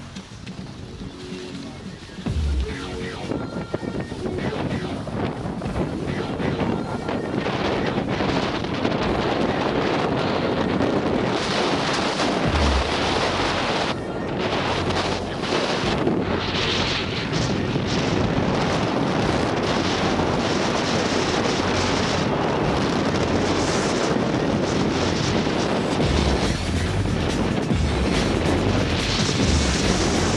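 Wind rushing over an action camera's microphone while a snowboard slides and scrapes over snow on a downhill run, growing louder about two seconds in as speed picks up, with a few low thumps.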